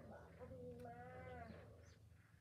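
A faint animal call: one drawn-out cry about a second long, wavering in pitch, over a low steady rumble.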